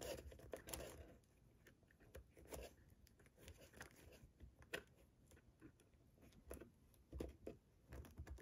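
Faint, irregular paper ticks and rustles of fingers flicking through a tightly packed box of paper cash envelopes.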